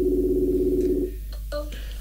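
Video-call ringing tone from a laptop as a Facebook call is placed: a steady, evenly pulsing tone for about a second, then a few short blips as the call connects.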